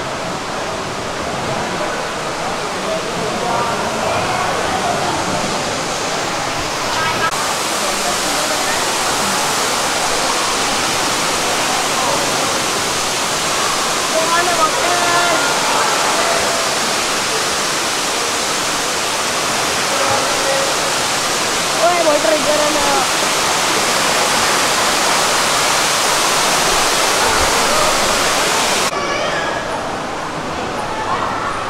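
Steady rushing of a large indoor waterfall, the Cloud Forest conservatory's cascade, with indistinct visitors' voices underneath. The rush grows brighter about seven seconds in and eases slightly near the end.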